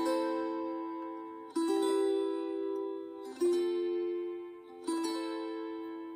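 Wing-shaped gusli (Baltic psaltery) in diatonic tuning strummed in slow chords, the left-hand fingers damping some strings to form each chord. A new chord is struck about every one and a half seconds, three times, each left ringing and fading as the harmony moves from one chord to the next.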